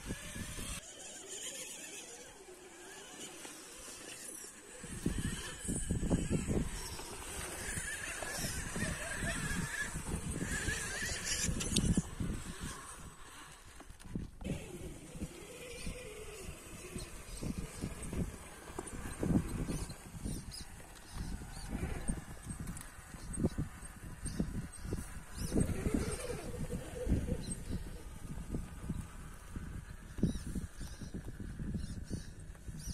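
Axial Capra RC rock crawler driving over rock, its small electric drive and tyres working against the stone. Irregular low rumbling runs from about five seconds in.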